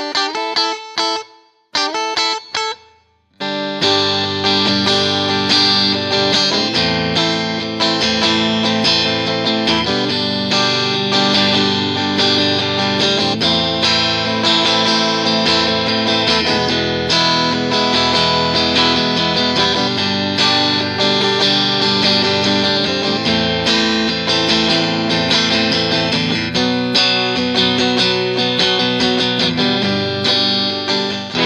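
A new Squier Bullet Stratocaster HSS electric guitar, straight out of the box and not yet set up, played through effects. A few separate picked notes with short breaks come first, then from about four seconds in a continuous run of chords and notes.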